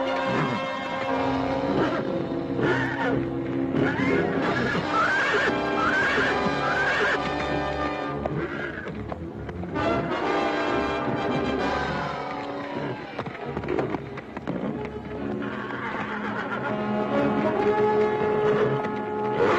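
Film score music playing throughout, with a horse whinnying over it.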